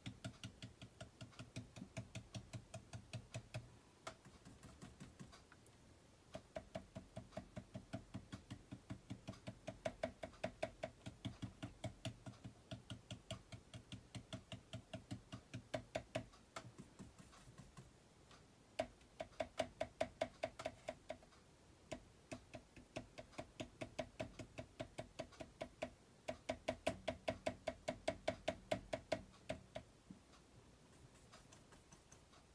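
A deerfoot stippler brush tapped rapidly against a canvas panel, stippling paint on: quiet, quick taps about four to five a second, in runs broken by short pauses.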